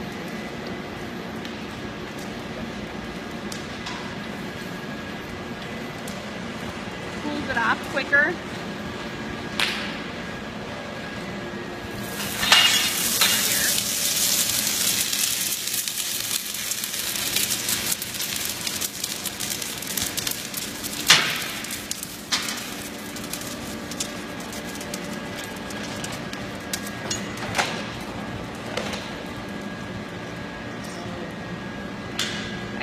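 Molten ductile iron being poured from a ladle into a sand mold: from about 12 s to 22 s a loud hissing, crackling rush as the metal runs and the mold flares, over a steady foundry hum with a few metal clinks.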